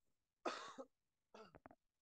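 A man coughing once, briefly, about half a second in, followed by a few softer throat-clearing sounds.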